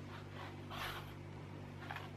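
Paintbrush strokes on a canvas: a soft swish a little under a second in and a shorter one near the end, over a steady low hum.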